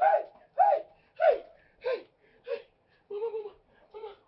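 A person's voice shouting short cries of "hey!" over and over, about six in quick succession, each dropping in pitch and the first few growing fainter, then one lower, longer cry a little after three seconds.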